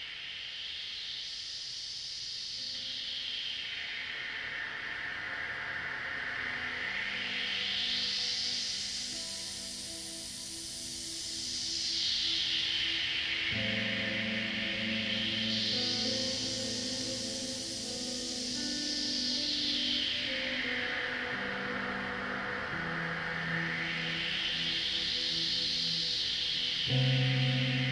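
Ambient synthesizer music: a band of filtered hiss sweeping slowly up and down about every nine seconds over held, sustained chords. The chords enter a few seconds in and grow fuller about halfway through.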